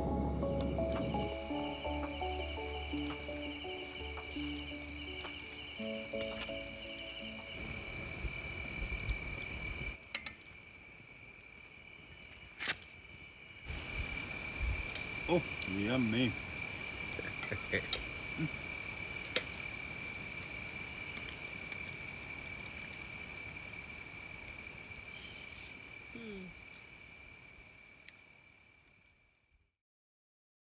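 Music for the first ten seconds, then crickets trilling steadily at one high pitch at night, with a few sharp clicks, fading out near the end.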